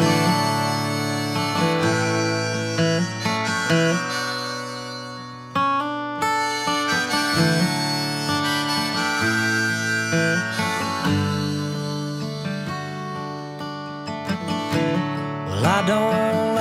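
Instrumental intro of a country song: an acoustic guitar played under a harmonica melody. A singing voice comes in near the end.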